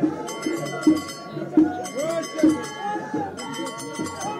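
Moroccan street music: metal percussion ringing and clashing in repeated bursts, over a steady beat of strokes about every three-quarters of a second, with voices mixed in.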